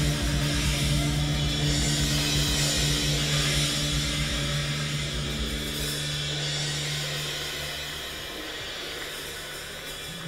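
Live jazz, with alto saxophone and double bass playing. A low held note sounds under the music and fades out about halfway through, and the music grows quieter toward the end.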